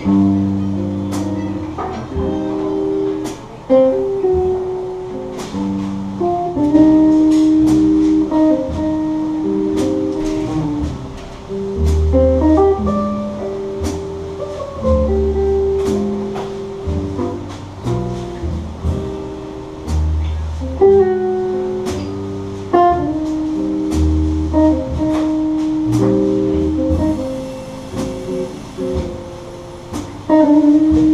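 Jazz guitar trio playing a ballad: a hollow-body electric guitar carries held melody notes and chords over upright bass and drums.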